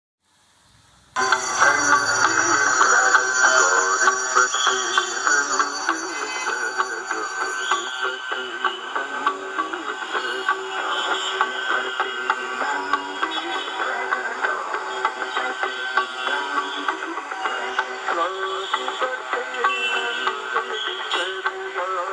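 Music that starts suddenly about a second in, after near silence, and plays on at a steady level.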